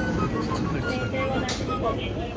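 Shop ambience: background music and low, indistinct voices over a steady low hum, with a brief hiss about one and a half seconds in.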